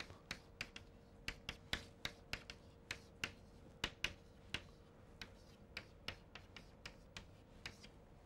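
Chalk writing on a blackboard: an irregular run of short, sharp clicks and taps as the chalk strikes the board, about three a second.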